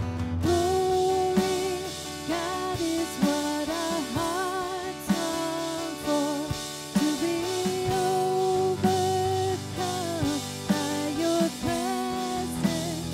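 A woman singing a slow worship song, holding long notes, with acoustic guitar strumming and a drum kit keeping the beat.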